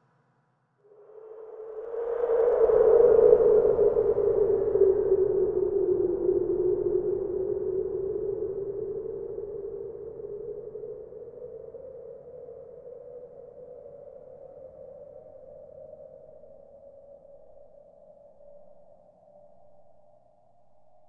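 A single long drone note from an ensemble of indigenous instruments and electronics. It swells in about a second after silence, peaks loudly around three seconds, then fades slowly, its pitch dipping and then rising slightly near the end.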